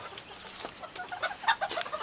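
Chickens clucking in their pens: a scatter of short, soft calls.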